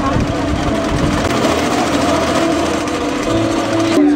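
Electric wood lathe running, spinning a wooden workpiece, with voices in the background.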